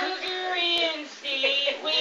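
Women laughing together in high-pitched bursts, with a short lull just past the middle.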